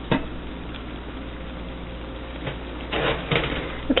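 Stainless steel pot lid clinking once as it is gripped by its knob, then rattling in a short cluster of metallic clicks about three seconds in as it is lifted off the pot, over a steady hiss.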